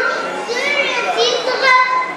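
A young girl singing unaccompanied into a microphone, a high child's voice moving through short held notes.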